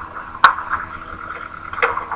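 Skateboarding clip's own audio played back through a slow-motion ramp, time-stretched: a steady hum with two sharp knocks, one about half a second in and one near the end.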